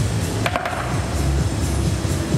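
Lion dance percussion: a large drum beaten steadily under repeated cymbal crashes, with one sharper ringing strike about half a second in.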